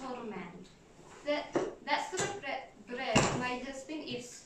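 Voices speaking or vocalising in a small room, broken by a few sharp knocks, the loudest about three seconds in.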